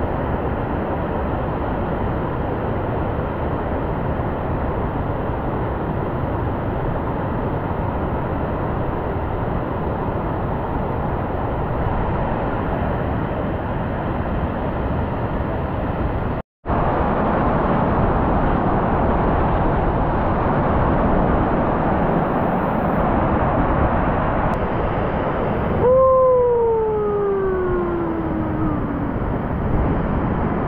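Mountain waterfall rushing close by: a steady noise of falling water that cuts out for a moment about halfway, then comes back a little louder. Near the end a long falling tone rises above it.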